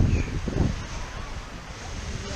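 Wind buffeting the microphone, heaviest in the first half-second or so and then easing, over a steady wash of gentle surf.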